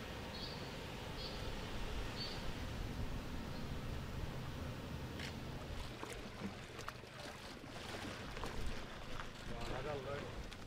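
Outdoor flood-scene ambience with a low wind rumble. A bird chirps over and over, about once every 0.7 s, for the first couple of seconds. In the second half come faint indistinct voices and scattered splashes and knocks as people drag a heavy animal carcass through shallow floodwater.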